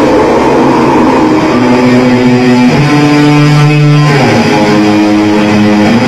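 Live death metal band: the drum beat gives way about a second and a half in to held electric guitar chords that change pitch every second or so, the music loud throughout.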